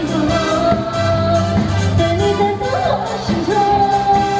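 A woman singing a pop song into a handheld microphone over backing music, holding long notes with a brief warble just before the second held note.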